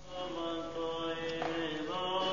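Orthodox church chant: a slow sung melody of long held notes, beginning just after the start.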